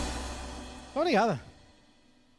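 A live band's closing chord fading away over about a second. Then a short vocal phrase on the microphone, and the sound drops almost to silence.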